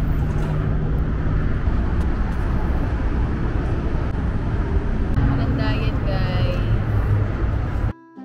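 Steady low rumble of road traffic with a low engine-like hum, and faint voices briefly about five seconds in.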